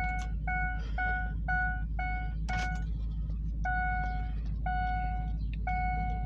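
Dashboard warning chime of a 2004 Ford E350 with the ignition key in and switched on before cranking: a run of short, even beeps about two a second, then slower, longer tones about a second apart.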